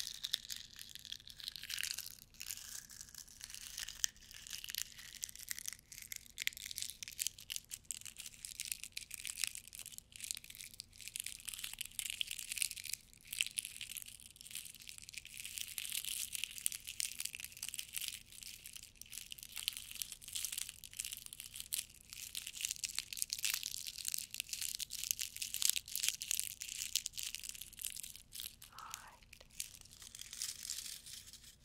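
Foil being crinkled and torn right at the microphone: a dense, steady crackle of many small crinkles and tears.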